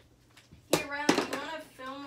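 A child's voice making a drawn-out, sing-song exclamation, starting about three-quarters of a second in, with a couple of sharp knocks around its start.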